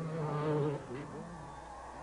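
Distant 250cc two-stroke motocross bikes buzzing, their engine pitch rising and falling as they rev, after a man's drawn-out word in the first second.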